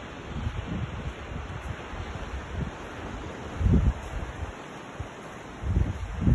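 Wind buffeting a phone's microphone in irregular low gusts over a steady outdoor hiss, with the strongest gust about three and a half seconds in and another near the end.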